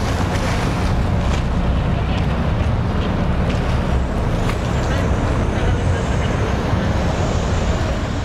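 A boat's engine running steadily, with wind and water noise on the microphone.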